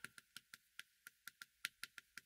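Chalk tapping and clicking on a blackboard while words are written: a run of faint, quick ticks, about five or six a second, unevenly spaced.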